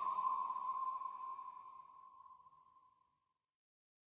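A single electronic ping-like tone with a sudden attack, ringing at one steady pitch and fading out over about three seconds.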